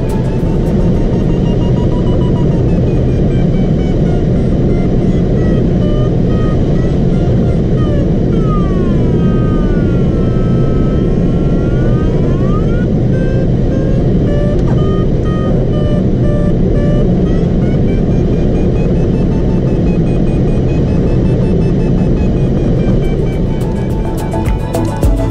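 Steady rush of air around a Ka6-CR glider's cockpit in a banked, circling climb, with an electronic variometer beeping at a pitch that slowly rises and falls. For a few seconds in the middle the beeps give way to a continuous tone that dips and then rises again.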